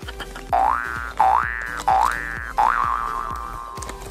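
Cartoon 'boing' sound effect played four times in quick succession, each a short rising springy tone, the last one wobbling as it fades, over background music.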